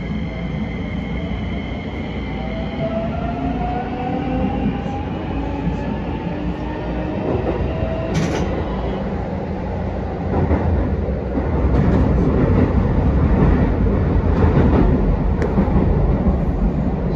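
Keisei 3100-series electric train pulling away and gathering speed, heard from the driver's cab: the traction motors' whine climbs in pitch over the first several seconds, then the rumble of wheels on rail grows louder as the train speeds up.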